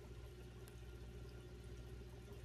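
Faint aquarium equipment running: a steady low hum with a soft water trickle, typical of a small tank's filter.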